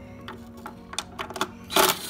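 A few light metallic clicks as a socket is fitted onto a bolt. Near the end, a loud burst from an impact wrench as it spins out an intake manifold bolt.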